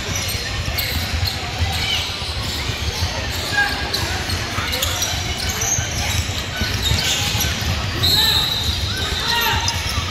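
Basketball game play in a large echoing gym: a ball bouncing on the hardwood court and players' feet on the floor, with spectators' voices in the background.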